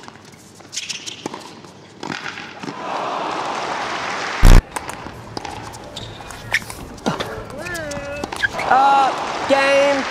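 Table tennis ball clicking back and forth off paddles and a concrete table during a rally, with one much louder sharp knock about halfway through.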